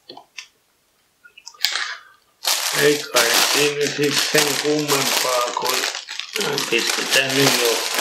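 Plastic bags of salad leaves crinkling loudly as they are handled, starting about two and a half seconds in after a brief rustle, with a man's voice over the crinkling.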